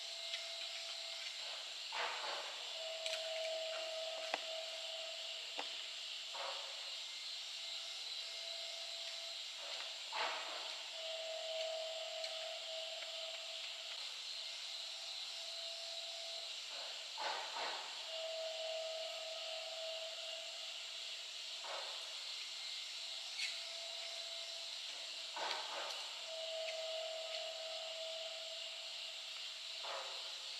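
Outdoor ambience: a steady high hiss, with a mid-pitched tone that sounds for about a second at a time every few seconds, and scattered brief scuffs.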